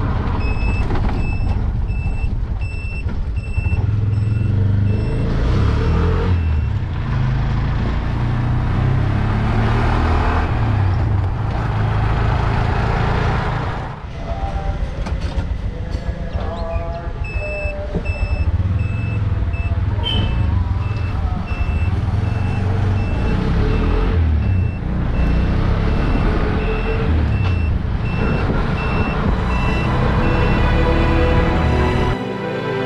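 Three-wheeler auto-rickshaw engine running as it drives along. An electronic beeper sounds about twice a second for a few seconds near the start, and again through the second half.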